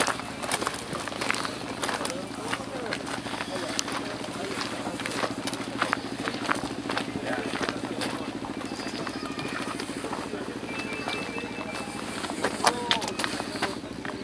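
Indistinct background voices of people talking over a steady low engine hum, with scattered short crunches and clicks like footsteps on gravel.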